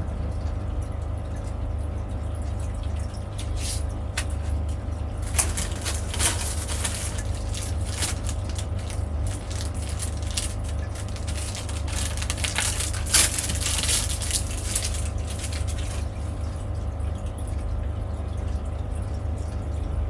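Crinkling and rustling of a clear plastic packaging bag being handled and opened, heaviest from about five to fifteen seconds in, over a steady low hum.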